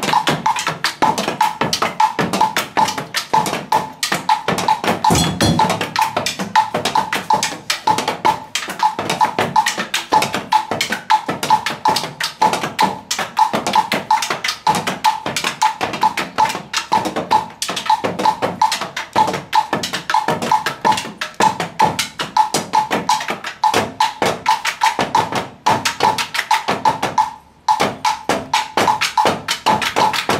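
Wooden staffs and sticks struck together by a group in a stick dance, a fast, steady rhythm of sharp wooden clacks, with drums playing alongside. The clacking breaks off briefly near the end.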